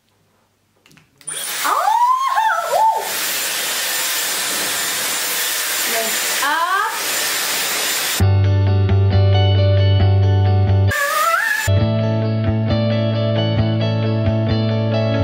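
Dyson Airwrap with its pre-drying dryer attachment switched on, blowing a steady rush of air, starting about a second in. About halfway through the air noise cuts off and background music with a strong bass line takes over.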